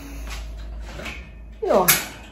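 Mostly quiet room noise with a steady low hum and a few faint knocks, then a woman says a drawn-out, falling "Ja" near the end.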